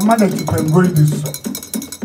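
A man's voice intoning words over fast, steady percussion with a metallic, bell-like ring, the strikes coming about ten a second.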